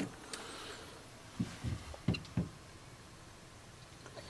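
Quiet room tone with four soft, low thumps close together around the middle.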